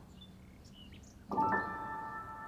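Background music: after a quiet start, soft sustained piano notes come in about a second and a half in and slowly fade.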